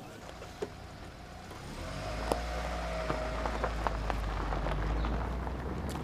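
A vehicle engine running steadily with a low rumble. It fades in and grows louder from about two seconds in.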